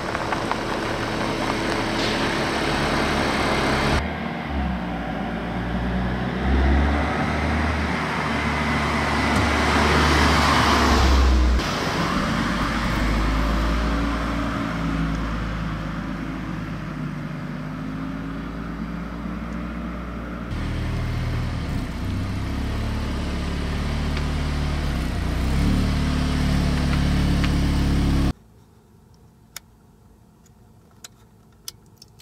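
Audi S3 Sportback's 2.0-litre turbocharged four-cylinder engine and exhaust heard from outside the car as it drives by and accelerates, in several short clips cut together with changing engine pitch. Near the end the sound cuts abruptly to a much quieter background with a few sharp clicks.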